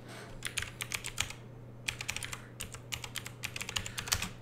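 Typing on a computer keyboard: a run of quick, irregular key clicks that pauses briefly a little over a second in, then carries on.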